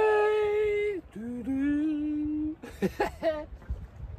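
A man singing wordless long held notes: a high note held until about a second in, then a lower note that slides up and is held, followed by a short wavering vocal flourish around three seconds in.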